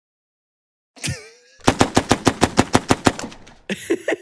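A burst of automatic machine-gun fire, a sound effect: about eight rapid, even shots a second for some two seconds. It comes after a second of silence and a short falling sound.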